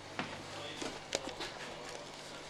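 Faint background noise with a steady low hum, broken by a few short sharp clicks.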